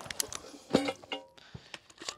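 The echo of a fast string of 9mm shots from a Grand Power Stribog SP9A3S carbine dies away. A few faint clinks and two brief ringing metallic tones follow, about a second in, as the steel-mounted target is knocked down.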